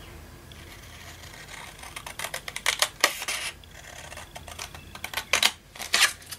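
Scissors snipping through a sheet of patterned scrapbook paper: a quick run of snips about two seconds in, then another few near the end.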